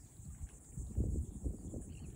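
Faint steady buzz of marsh insects, under irregular low rumbles on the microphone, strongest about a second in.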